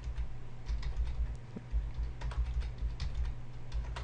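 Computer keyboard being typed on: an irregular run of separate keystrokes as numbers are entered, over a steady low hum.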